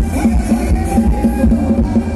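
Thai ramwong dance music from a live band, played loud over stage loudspeakers, with a fast steady beat and melody.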